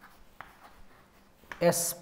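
Chalk writing on a chalkboard: faint, short taps and scratches as the chalk forms letters.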